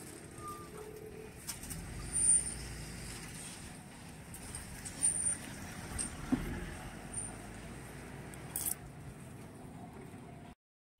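Road traffic moving over a level crossing: a steady low rumble of vehicle engines and tyres, with a few brief louder moments about two and five seconds in.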